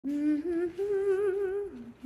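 A woman humming a short wordless tune: three held notes stepping upward, the longest one wavering, then a drop to a lower note near the end.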